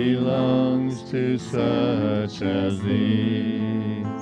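A slow worship song sung with long held notes, pausing briefly about a second in and again a little past the middle.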